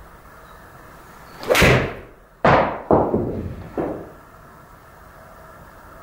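A golf swing with a PXG 0311 seven iron: a swelling whoosh, then a sudden sharp strike about two and a half seconds in, followed by two more fading knocks as the ball hits the simulator screen and drops. The strike is a well-struck shot.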